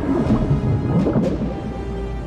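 Film soundtrack: a deep, rough rumble of sci-fi sound effects with orchestral score underneath.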